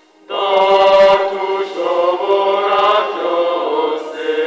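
Church choir singing a hymn together, the voices coming in all at once about a third of a second in.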